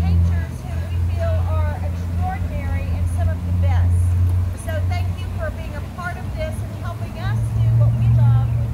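Indistinct speech of a person addressing a gathered group, over a steady low rumble.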